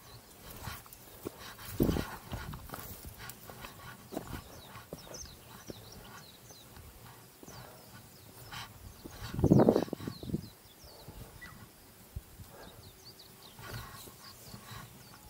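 Small birds chirping off and on in the background, with two louder bursts of noise, one about two seconds in and a longer one near ten seconds.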